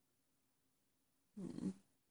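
One short vocal sound, about half a second long, a little past the middle of an otherwise near-silent stretch.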